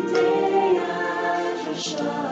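Worship music: several voices singing together in held notes.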